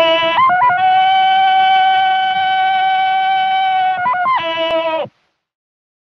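A voice singing one long held 'oh' note. It steps up a little in pitch after about half a second, holds steady, drops back near the end and cuts off abruptly about five seconds in.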